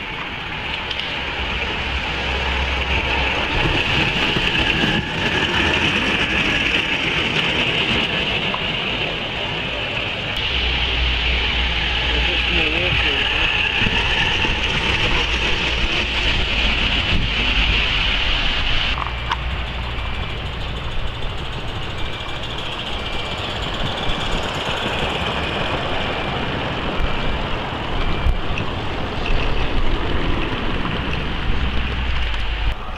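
Indistinct voices of people talking in the background, over a steady hiss and an on-and-off low rumble.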